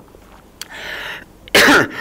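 A man coughing and clearing his throat into his hand: a rasping breath a little over half a second in, then a loud cough near the end.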